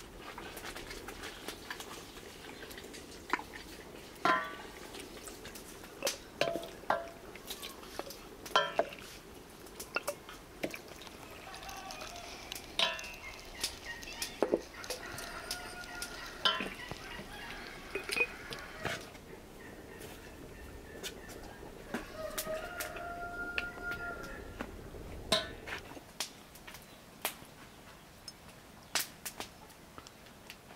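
Glass jars clinking and knocking as they are filled with cooked mushrooms by hand, in frequent sharp taps. Chickens cluck in the background, with a few short calls in the middle and a longer one near the end.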